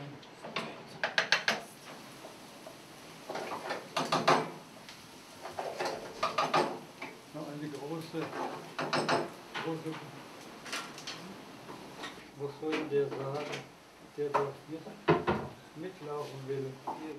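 Kitchen clatter: a utensil knocking and scraping against a frying pan and pots, with a quick run of knocks about a second in and single knocks scattered after, over quiet, indistinct voices.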